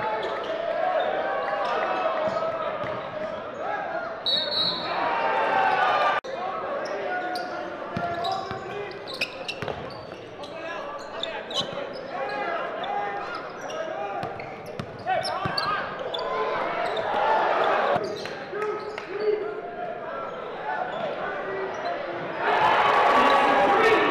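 Basketball game sound in a gymnasium: indistinct crowd and player voices with a ball bouncing on the hardwood floor and scattered short knocks. A brief high whistle sounds about four seconds in, and the voices grow louder near the end.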